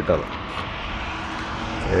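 Steady road traffic noise from a highway, a low even rumble with a faint hum, between bursts of a man talking.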